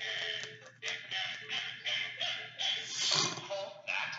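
Farmyard birds, chickens, ducks and geese, crying out together in a noisy, choppy clamor over background music, loudest about three seconds in.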